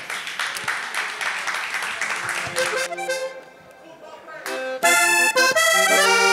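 Audience applause for the first three seconds, fading out. A diatonic button accordion then starts with a few soft notes and comes in loud with full chords from about five seconds in.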